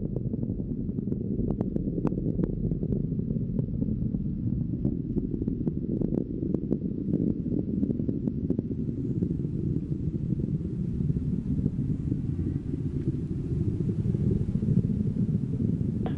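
SpaceX Falcon 9 rocket engines heard as a steady low rumble with scattered crackles.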